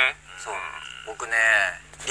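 Voices talking in short spoken runs, with a low steady hum underneath.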